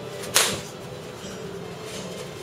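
Boxing glove punch landing with a single sharp smack, about a third of a second in.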